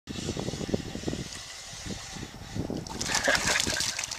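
A hooked walleye splashing and thrashing at the water's surface as it is reeled in on a spinning rod, loudest in the last second. Before that, dull low knocks and rumble.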